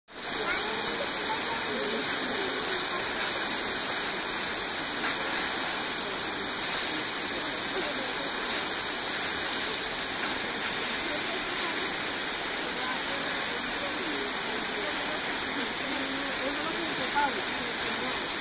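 Tall waterfall: a steady, even rush of falling water.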